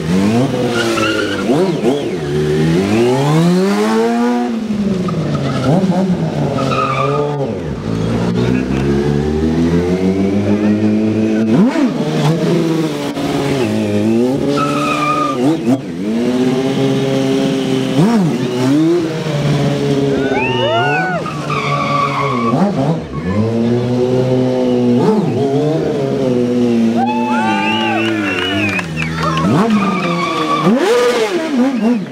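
Stunt motorcycle engine revved up and down over and over while the rider pulls wheelies and slides the bike. Short tyre squeals from the rear tyre skidding on the asphalt come about two-thirds of the way in and again near the end.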